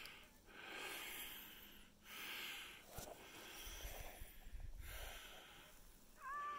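Faint breathing close to the microphone, several breaths in and out with short pauses between them, with a little low rumble in the second half.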